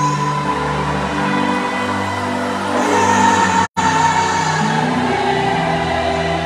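Live gospel music from a band and singers, with sustained keyboard-like chords, bass notes and group vocals. The sound cuts out completely for a split second about two-thirds of the way through.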